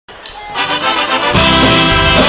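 Live band starting a song, with brass to the fore. The music fades in, and the full band, bass and drums included, comes in about a second and a half in.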